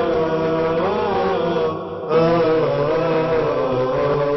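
Vocal chanting without instruments: long, held melodic notes that slowly bend in pitch, with a short break about two seconds in.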